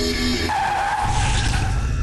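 Car tyres squealing in a skid for about a second over a low rumble, opened by a short pitched blare: the sound of a car crash about to happen.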